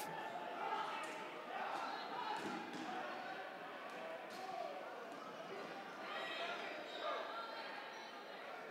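Faint sound of a dodgeball game in a large gym: players' voices calling out across the court, with a few sharp smacks of dodgeballs being thrown and hitting the floor or walls.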